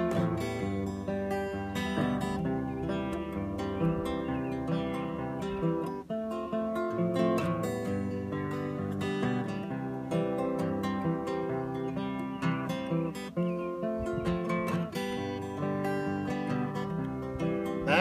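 Steel-string acoustic guitar strummed in chords, a steady rhythm of strokes with the chords ringing on, briefly dropping off about six seconds in.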